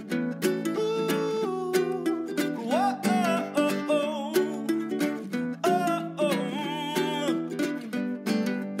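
Background music led by plucked strings on a steady beat, with a sung melody over it.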